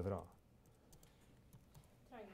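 Faint typing on a computer keyboard, a few light keystroke clicks.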